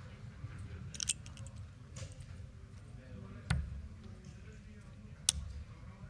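Steel-tip darts hitting a Winmau bristle dartboard: a few sharp single thuds a second or two apart, the loudest about five seconds in, over low room noise.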